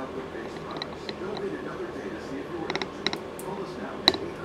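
A chainsaw's plastic fuel tank and fuel line being handled as the line is pulled through the tank. There is soft rubbing and rustling, with scattered small plastic clicks and a cluster of sharper clicks about three seconds in.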